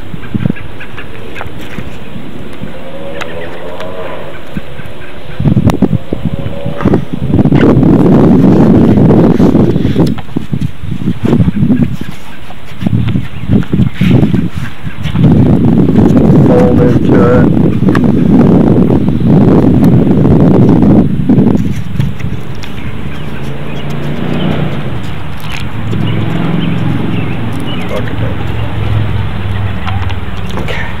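Sandpaper being handled, folded and pressed into the clamp of an electric finishing sander close to the microphone: crinkling, rustling paper and handling knocks. It comes in two long loud spells, one about a quarter of the way through and a longer one around the middle, with lighter handling between and after.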